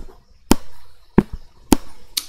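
About five sharp, unevenly spaced clicks at a computer: keystrokes and mouse clicks as a terminal window is opened and moved.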